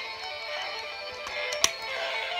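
Beast-X Morpher toy playing its electronic guitar-riff morph music through its small built-in speaker. A single sharp plastic click about one and a half seconds in, as the toy's dial or button is pressed.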